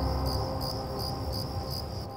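Crickets chirping in an even rhythm of about three chirps a second, over soft music of held low notes.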